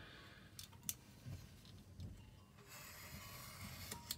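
Faint scraping of a craft knife blade drawn along a steel ruler, scoring a fold line into thin card. There is a light tick about a second in, and a soft, even rasp from a little after halfway to the end.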